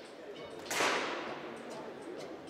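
A broadcast swoosh sound effect: one sudden rush of noise about three-quarters of a second in, fading away over about half a second.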